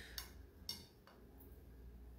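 Near silence: room tone with two brief faint clicks, the second about half a second after the first.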